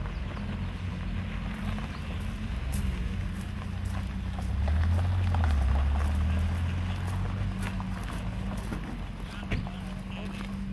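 Cars rolling slowly over gravel at low revs, tyres crunching. The low engine note of a white E46 BMW M3 swells as it comes close about five seconds in, then fades.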